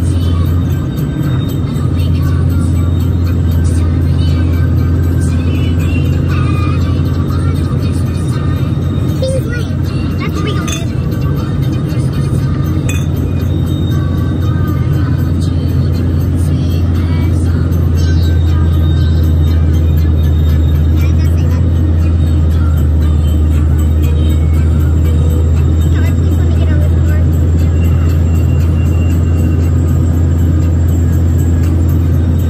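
Music playing inside a moving car, over the steady low drone of the car on the road.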